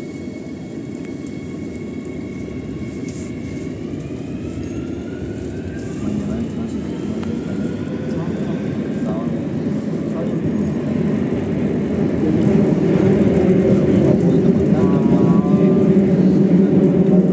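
A Madrid Metro Line 2 train pulling away from a station and accelerating into the tunnel, heard from inside the car. A whine from the electric traction motors rises in pitch over a rumble of wheels on rail, and both grow steadily louder.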